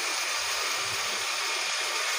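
Potato wedges and flat beans frying in oil in a kadai, a steady sizzle.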